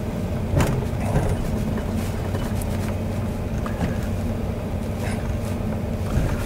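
Steady low hum of a pickup truck's engine and tyres while it drives slowly, heard from inside the cab, with a couple of light knocks.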